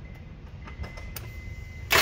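Low background with a few faint clicks and a faint steady high tone, then just before the end a starter motor kicks in and begins cranking the engine, loud and dense.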